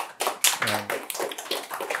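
A small audience applauding, the separate hand claps densely packed.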